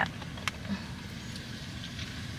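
Car engine idling, a low steady rumble heard from inside the cabin, with a single sharp click about half a second in.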